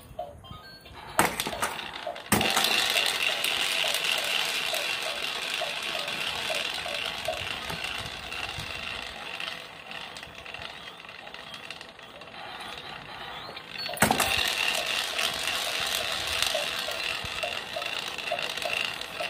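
Battery-operated light-up musical toy playing an electronic tune with a steady repeating click, switching on with a jump in loudness about two seconds in, easing off midway and starting again loudly about fourteen seconds in. A couple of sharp knocks of toys being handled come just before it starts.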